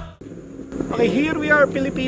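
Music cuts off right at the start, and after a short lull a man begins talking about a second in, over faint steady background noise.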